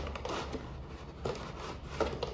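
Cardboard packaging rubbing and scraping as a headphone box is slid out of its paper sleeve, with a brief sharper scrape about a second in.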